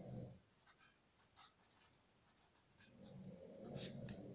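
Faint strokes of a pen writing on notebook paper, a scattering of short soft scratches with a sharper tick near the end.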